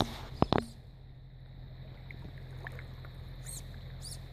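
Steady rush of a shallow mountain creek flowing, with a low rumble under it; a quick cluster of sharp clicks sounds in the first second.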